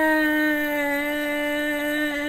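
A man singing one long held 'aah' note, unaccompanied, at a steady pitch.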